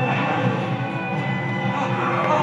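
Film soundtrack music playing from a television, steady and continuous.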